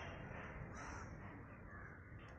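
Faint outdoor background noise with distant bird calls.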